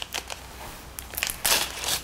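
Packaging pouch of a Hexagon OBTI blood test cassette crinkling and crackling as gloved hands open it, in irregular bursts that grow louder about one and a half seconds in.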